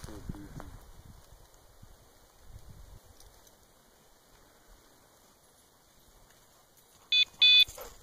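Two short, loud signal tones of steady pitch near the end, the second a little longer. Before them it is quiet, apart from a voice trailing off at the very start.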